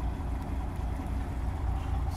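Semi truck's diesel engine idling, heard from inside the cab: a steady low rumble.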